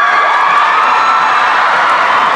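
A crowd of children cheering and screaming loudly, many high voices held together.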